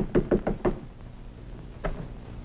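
Knuckles rapping on a wooden panelled door: a quick run of about five knocks in the first second, then a single knock near the end.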